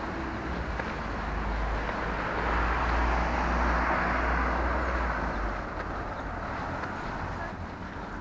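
Road traffic noise: a car passes on the adjacent road, its tyre and engine sound swelling about halfway through and fading away again.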